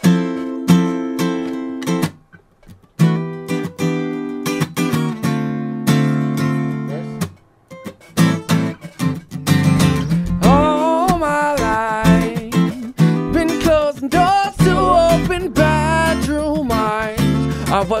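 Live band playing a song intro: an acoustic guitar strums chords with short breaks. From about ten seconds in a wavering melody line rises over it, and an electric bass joins a few seconds later.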